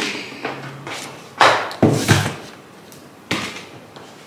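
Handling knocks: a few thumps and clacks as objects are moved about and set down, the loudest cluster about a second and a half to two seconds in and one more near the end.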